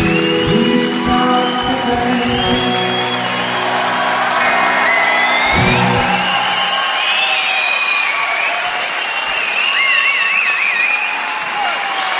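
A live band's final chord, led by guitar, rings out and is struck once more about five and a half seconds in, with a crowd already cheering over it. The music then fades and the audience goes on applauding, cheering and whistling.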